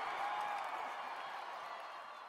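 The tail of an outro sound effect: a broad, even wash of noise, like distant applause or a reverberant whoosh, fading steadily away.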